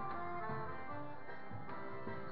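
Live forró played on accordion, zabumba drum, triangle and guitar, with no singing: the accordion carries a melody of held notes over regular drum beats.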